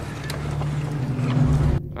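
A steady rumbling noise with a low drone under it, swelling toward the end and then cutting off abruptly.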